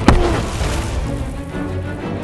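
Background music with one sharp clashing hit a moment in, from the fight, followed by a short ringing tone that falls away.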